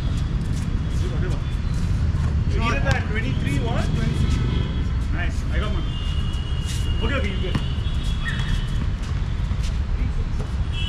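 Pickup basketball game on an outdoor court: players' voices calling out over a steady low rumble, with scattered short knocks from the ball and feet.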